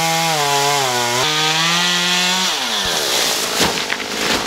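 Chainsaw cutting at full throttle, its pitch wavering and stepping as it works through the palm trunk, then winding down about two and a half seconds in as the throttle is released. Near the end come a couple of sharp thuds as the cut section of palm lands.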